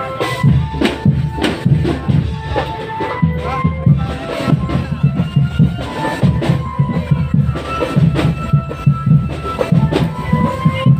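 A marching drum band playing: low drums beat a fast, steady rhythm under a melody of held notes.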